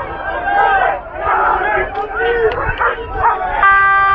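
Football fans shouting and yelling in the stands, many voices at once. A horn sounds briefly near the end.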